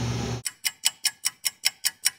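Clock-ticking sound effect: a run of quick, even ticks, about five a second, starting about half a second in against dead silence, the room hum cut away.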